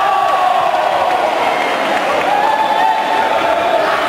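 Crowd of spectators cheering and shouting, with several raised voices held over a constant din.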